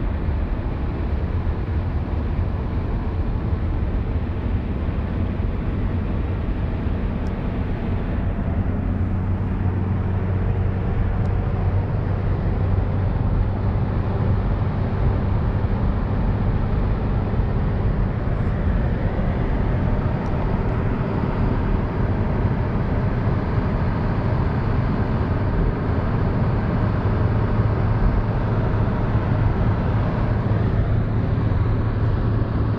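Steady cabin noise of a car cruising at motorway speed: tyre roar, wind and engine blending into a low drone that grows slightly louder in the second half.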